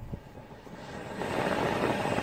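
A 2019 Honda Jazz's cabin blower fan starts up as the fan-speed knob is turned up from off, and the rush of air through the vents grows steadily louder from about a second in. A faint click at the start.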